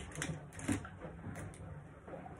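A few light, irregular clicks and taps of small objects being handled.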